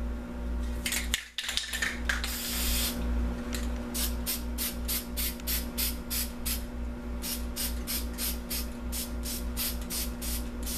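Aerosol spray paint can hissing through a paper stencil: one longer spray about two seconds in, then a run of short quick bursts, about three a second, with a brief pause near the seven-second mark.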